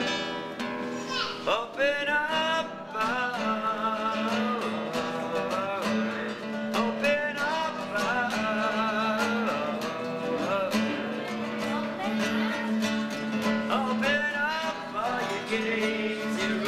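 Acoustic guitar accompanying a singing voice in a slow song. The voice comes in about a second and a half in and sings long notes with vibrato over held guitar notes.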